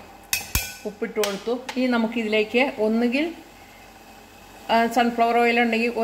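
A metal spoon clinks against a stainless-steel pot about half a second in, with a short ringing tone after it. Speech runs over most of the rest.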